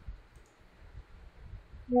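A few faint computer mouse clicks over steady low background noise. Just before the end a message-notification chime sounds as a WhatsApp message pops up.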